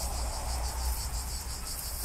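Insects chirring in a steady, high, pulsing drone, with a low rumble underneath.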